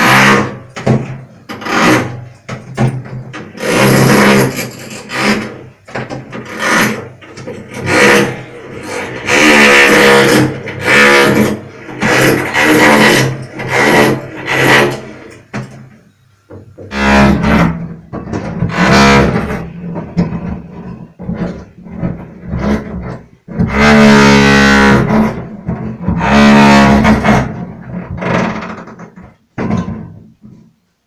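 Hammer drill running in short bursts, starting and stopping every second or so, with a few longer runs of about two seconds.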